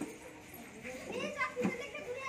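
A group of children chattering and calling out during a game, several voices overlapping, with a single knock about one and a half seconds in.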